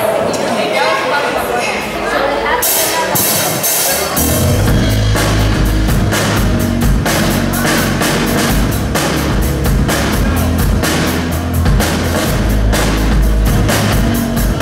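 Hard rock band playing live on amplified electric guitars, bass and drum kit as the song starts. Cymbals come in near three seconds, and the full band kicks in about four seconds in with a steady driving beat.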